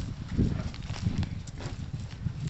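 Irregular light knocks and dull thuds of a long bamboo pole prodding and dragging through loose dug soil.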